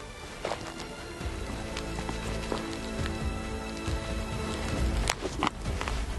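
Background music with steady held tones, over the rustling and twisting of a cheap Chinese tourniquet's windlass, with a sharp snap about five seconds in as the windlass rod breaks under the tension, followed by a second click.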